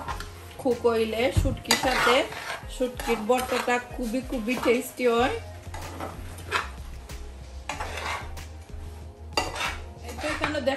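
A spoon and spatula scraping and knocking against a stainless steel frying pan while sliced onions and dried fish are stirred, with many short clinks and scrapes throughout.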